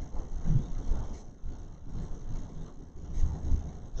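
A pause in speech filled by an uneven, low rumble of room noise, with no distinct event.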